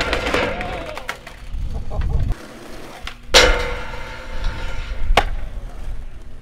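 Skateboard wheels rolling on concrete with a low rumble that stops after about two seconds. A loud board impact follows about three seconds in and rings briefly, then a sharp clack comes near the end.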